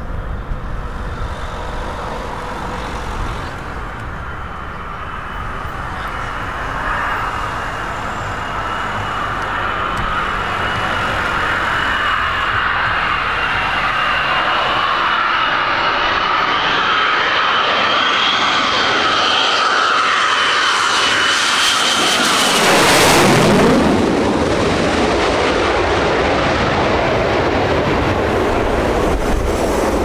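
Lockheed Martin F-22 Raptor on landing approach with gear down, its twin Pratt & Whitney F119 turbofans whining and growing steadily louder. About three-quarters of the way through it passes overhead: the whine drops sharply in pitch at the loudest moment, and the jet noise runs on as it moves away.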